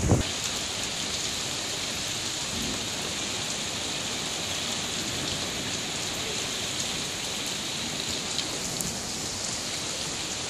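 Steady rain falling on wet stone paving and puddles, an even hiss throughout, with a brief low rumble right at the start.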